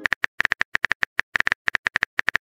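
Rapid, uneven clicking of a phone-keyboard typing sound effect, about eight taps a second: a message being typed out.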